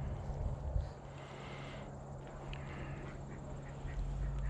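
Ducks quacking faintly in the background, a few short calls over a low steady hum.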